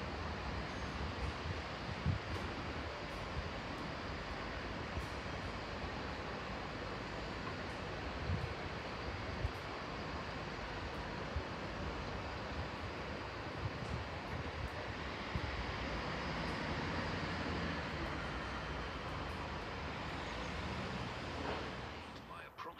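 Chiltern Railways class 165 diesel multiple unit running as it draws away over the station pointwork, a steady noise with a few brief low knocks, mixed with wind on the microphone.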